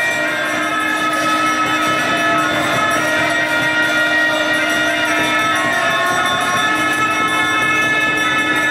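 Tibetan monastic wind instruments, gyaling oboes and a conch shell trumpet, sounding long held reedy notes in several pitches at once; the lowest note breaks off briefly about six seconds in.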